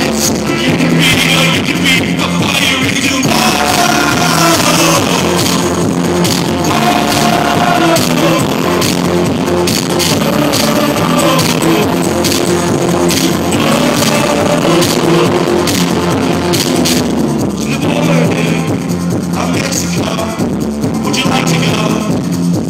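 Live band playing loud: drum kit, electric guitar and bass, and keyboard, with a trumpet playing long held notes over the top.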